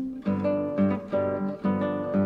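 Solo acoustic guitar playing a slow run of plucked notes, each left to ring, about four in two seconds.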